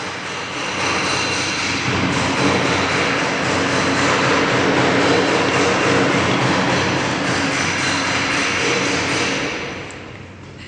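Steady, loud machine noise, fading away near the end.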